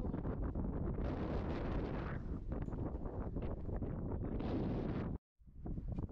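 Wind buffeting a camera microphone in a low, rumbling roar, with scattered scuffs and knocks from climbing over rock. The sound drops out completely for a moment about five seconds in, then the wind resumes.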